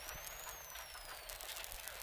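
Volvo 240 rally car driving at speed on a gravel stage, heard faintly through the in-car intercom feed as a steady hiss and low rumble. A thin high whine rises and then falls.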